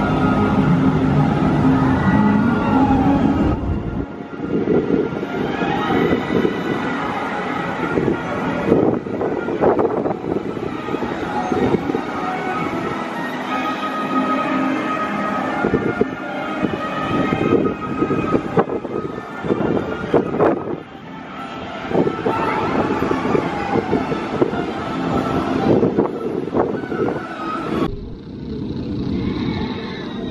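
Jurassic World VelociCoaster, a launched steel roller coaster, with its train running over the track: a loud rumble full of clattering. The sound changes abruptly about four seconds in and again near the end.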